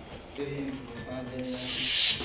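A transition whoosh sound effect: a high hiss that swells to its loudest at the end, leading into a title graphic. Before it, a faint low held tone.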